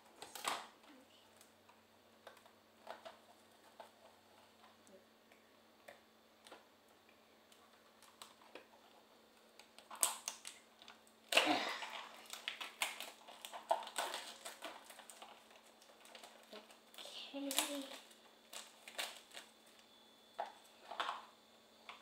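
A small cardboard toy box and its clear plastic wrap being opened by hand: a scissor snip near the start, then scattered clicks and rustles that become denser crinkling of the packaging about halfway through.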